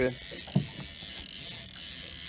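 Spinning fishing reel being cranked slowly, its gears giving a faint steady whir as a hooked fish is reeled up.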